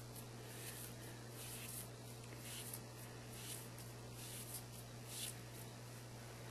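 Faint, soft rustles of cotton t-shirt jersey strips being handled and pulled taut by hand, a dozen or so brief scuffs over a steady low hum.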